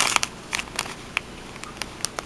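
Clear plastic packaging of a stamp set being handled, giving a scatter of short crinkles and clicks.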